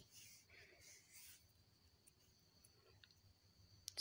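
Near silence: room tone, with a faint soft hiss in about the first second and a half and two faint clicks near the end.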